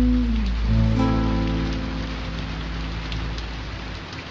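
Steady rain patter with faint drop ticks under the song's instrumental backing; held notes die away in the first second or two and the rain fades gradually after them.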